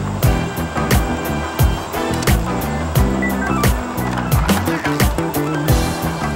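Background music with a steady, fast drum beat.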